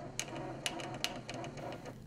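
Electronic voting machine's paper-record printer printing the voter's ballot selections onto a paper tape, a steady mechanical whirr with sharp clicks, stopping near the end.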